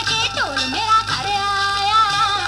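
A Punjabi folk record playing from a vinyl LP on a turntable: a melody with sliding notes, including one long downward slide just before the middle.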